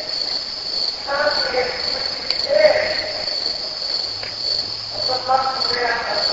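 Crickets trilling in one steady high-pitched tone, with a person's voice breaking in briefly about a second in, again near three seconds, and from about five seconds, where the words "I'm so" begin.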